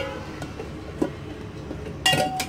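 Low steady background hum, with one faint knock about a second in.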